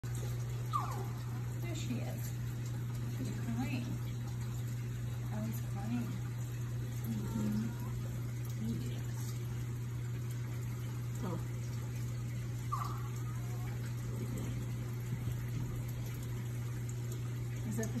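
Steady low hum and running water from an aquarium's circulation equipment, with faint voices now and then in the background.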